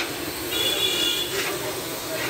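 Tea stall bustle: ceramic tea cups clinking as they are picked up, over a steady background rumble. A short high-pitched steady tone sounds about half a second in and lasts under a second.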